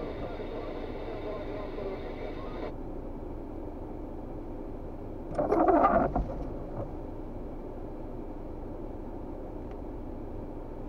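A person growling "grrrr" once, about halfway through, over the steady hum of a stationary car's engine heard from inside the cabin. A faint high whine in the background cuts off about three seconds in.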